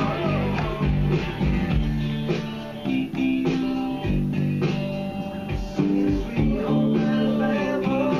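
Electric bass guitar playing a steady bass line along with a recorded rock song, with guitar and a beat in the mix.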